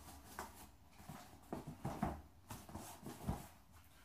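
A large knife cutting and scraping packing tape on top of a cardboard box, heard as a handful of short, irregular scratchy strokes and light knocks.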